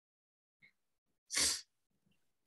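A single short, sharp burst of breath noise close to the microphone, about a second and a half in, against otherwise near silence.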